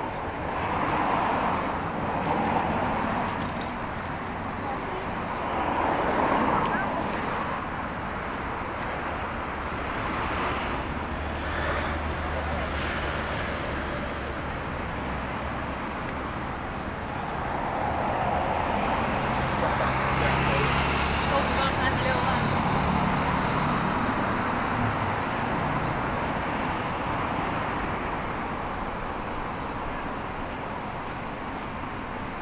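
Road traffic on a city street: vehicles passing one after another in swells, with the low hum of a heavier engine near the middle and again past the two-thirds mark. A thin, steady, high insect trill runs underneath from about four seconds in.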